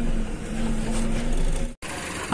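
Diesel engine of an Eicher truck running steadily, heard from inside the cab as a low rumble with a steady hum. The sound cuts off abruptly shortly before the end.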